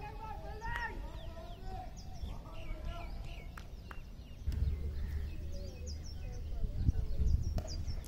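Faint, distant voices on an open cricket field, with birds chirping and a low rumble that grows louder about halfway through.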